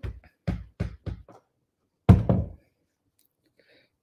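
A few light knocks on a wooden tabletop, then one heavier thump about two seconds in, as a cordless hot glue gun is set down on the table.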